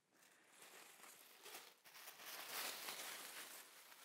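Tissue paper rustling faintly as a sheet is picked up and handled, getting louder about halfway through.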